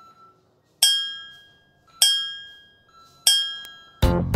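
Three bright, bell-like chime strikes about a second apart, each ringing out and fading away.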